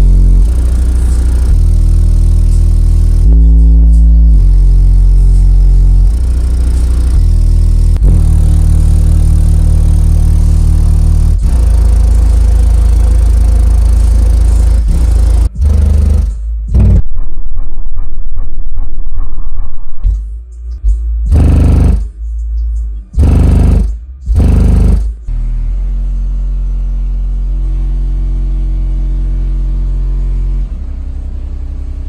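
A Black Diamond DIA-R12 12-inch car subwoofer playing bass-heavy music loud, a deep bass line stepping between low notes every second or two. About two-thirds through the bass drops out, comes back in a few short bursts, then settles to a steady, quieter bass.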